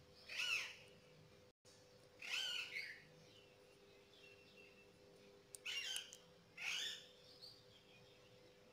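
A bird calling: four short calls with bending pitch, the first two about two seconds apart and the last two about a second apart. A faint steady hum runs underneath.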